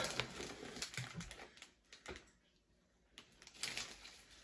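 Plastic snack bag of Flamin' Hot Cheetos crinkling as a hand reaches in for chips: a sharp crackle at the start fading into soft rustling, a brief lull, then a few light clicks near the end.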